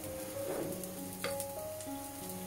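Hot water boiling and hissing in a steaming wok as a metal ladle scoops it out, with a sharp clink of the ladle about a second and a quarter in. Background music plays along.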